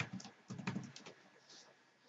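Computer keyboard being typed on: a handful of keystrokes in short runs.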